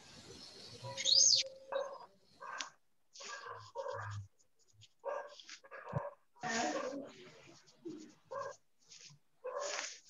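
A dog barking repeatedly in short barks, about a dozen spread over several seconds, after a high rising-and-falling squeal about a second in. It is picked up by a video-call participant's microphone.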